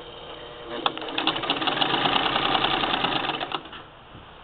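1947 Singer 66-16 sewing machine stitching a tuck with a tucker attachment fitted on the needle bar: a fast, even clatter of stitches that starts about a second in, runs steadily for a couple of seconds, then slows and stops near the end.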